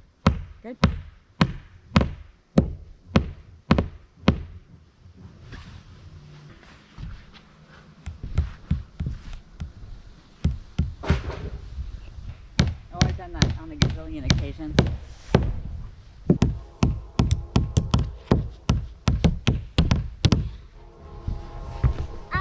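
A hammer driving plastic-cap roofing nails through tar paper into an OSB roof deck: sharp blows at about two a second, in runs broken by a pause of a few seconds early on.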